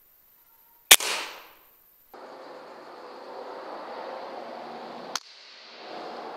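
A single PCP air rifle shot about a second in: one sharp, loud crack with a short fading tail. It is followed by a steady hiss of background noise, with a fainter click near the end.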